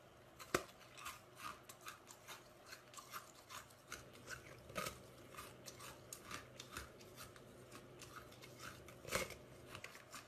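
Red rose-shaped ice being bitten and chewed, giving a run of crisp cracks and crunches about two to three a second. The loudest snaps come about half a second in, around the middle and near the end.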